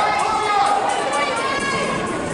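A few spectators shouting encouragement to runners, high raised voices with a long drawn-out shout at the start.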